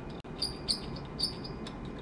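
Glass rod scratching the inside wall of a round-bottomed glass flask: a continuous grating scrape broken by several short, high-pitched squeaks of glass on glass. The scratching chips off tiny glass fragments that act as seeds for crystals to form in the solution.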